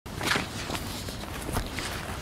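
A few short rustling crunches of a person moving on dry, leaf-strewn ground or handling papers, over a steady low background noise.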